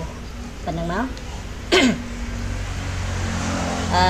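A person speaking in short fragments, with one short, loud vocal sound falling in pitch just before two seconds in, over a steady low background hum.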